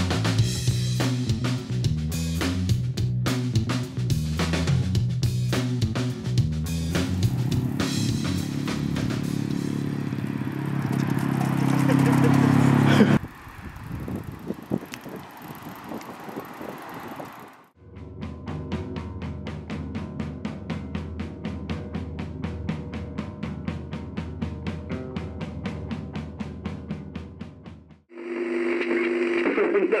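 Rock band music with a drum kit, building and getting louder before breaking off suddenly about thirteen seconds in. A steady drumbeat carries most of the second half.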